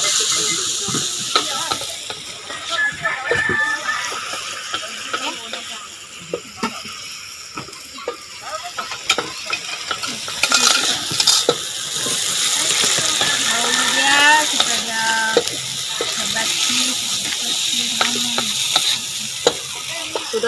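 Ensabi greens with garlic and dried anchovies sizzling in hot oil in a wok, stirred and turned with a wooden spatula that scrapes and knocks against the metal.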